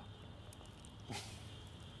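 Quiet pause: a faint steady electrical hum, with one short hissing noise about a second in.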